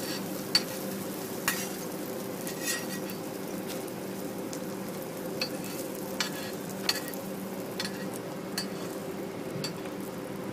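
A banana pancake frying on a flat steel griddle, sizzling steadily. A metal spatula clinks and taps against the griddle about nine times at irregular moments. A steady low hum runs underneath.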